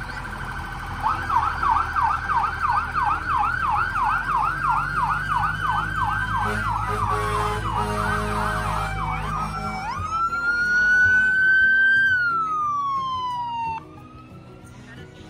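Electronic sirens of passing emergency vehicles, a fire engine and a police pickup: a held tone, then a fast yelp sweeping up and down about three or four times a second over a low engine rumble, then a slow wail that rises and falls before cutting off suddenly.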